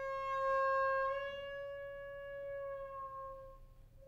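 Soprano saxophone holding one long note, unaccompanied, which rises slightly in pitch about a second in and fades away near the end.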